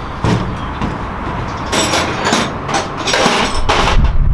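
Irregular clunks, rattles and scrapes of hands and tools working on a motorcycle's front end, coming thicker in the second half.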